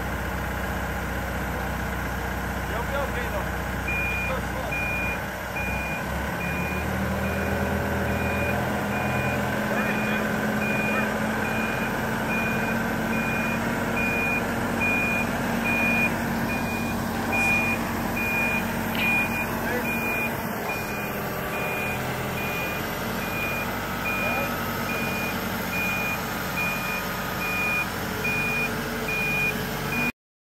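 Genie GTH-5519 telehandler's engine running under load as it lifts and carries a bundle of logs, its pitch rising about seven seconds in. A backup alarm beeps steadily about once a second from a few seconds in.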